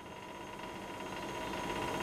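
Faint steady room hum with a thin, steady high tone running through it, growing slightly louder toward the end.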